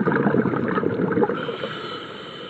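Underwater bubbling and water rushing, picked up by the underwater camera: a dense crackle of bubbles for the first second and more, then fading. A faint high steady whine comes in near the end.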